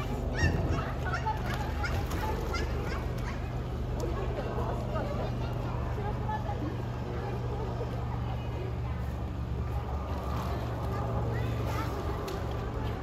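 Indistinct chatter of onlookers, with voices loudest in the first few seconds, over a steady low hum.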